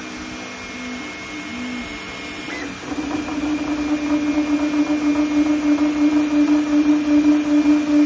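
Elegoo Neptune 4 Plus 3D printer running a fast print in sport mode. Its motors whine in short tones that change pitch, then from about three seconds in settle into one steady hum that pulses a few times a second as the print head sweeps back and forth. A faint constant high tone runs underneath.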